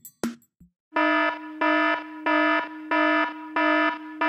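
An alarm-like electronic beep repeats five times, about every two-thirds of a second, each beep a steady buzzing tone, in a break of a dancehall track with the beat dropped out. A last drum hit sounds just before the beeps begin.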